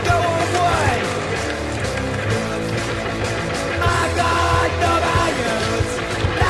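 Rock music with a steady drumbeat and shouted singing.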